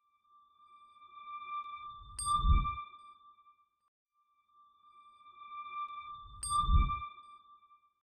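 Synthesized end-card sting: a steady high electronic tone with overtones. Twice, about four seconds apart, a low swell builds into a deep boom with a sharp ping on top.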